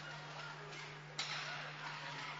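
Ice hockey rink ambience with a steady low hum. About a second in comes a sharp crack of a hard puck impact from a shot, followed by louder, sustained rink and crowd noise.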